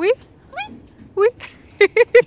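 Galah cockatoos calling: four short, sharply rising squawks, spaced about half a second apart.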